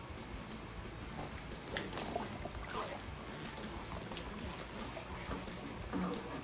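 A corrugated plastic pool vacuum hose being handled and untangled: irregular knocks and rustles, with some water trickling and sloshing as the hose goes into the pool, over a steady low hum.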